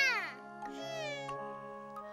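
Soft background score with held notes. A girl's high, drawn-out exclamation rises and falls at the very start, and a shorter pitched phrase follows about half a second later.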